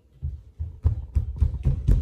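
A string of knocks and thumps, getting louder toward the end: handling noise from the recording phone being picked up and moved.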